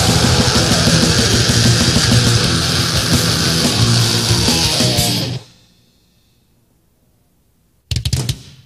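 Brutal death metal recording with distorted guitars and drums. It stops about five seconds in, and near silence follows until a sudden loud burst of sound just before the end.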